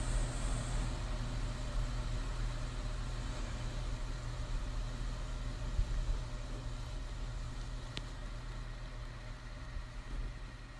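Steady low rumbling background ambience with a light hiss above it, slowly fading, and a single sharp click about eight seconds in.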